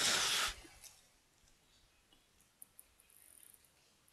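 A brief breathy hiss at the start, then quiet room tone with two faint computer mouse clicks, one just after the other, about two and a half seconds in.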